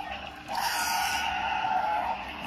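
A toy dinosaur's electronic roar from its small built-in speaker: one steady roar about a second and a half long, starting half a second in.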